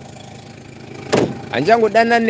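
A recorded voice note pausing between phrases: a second of low steady background noise, a short sharp burst about a second in, then the voice starts talking again.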